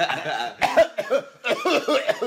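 Two men laughing, with coughing mixed in.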